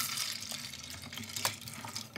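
Milk poured from a plastic measuring jug into a pot of dry macaroni and potatoes: a steady splashing pour, with a few light clicks along the way.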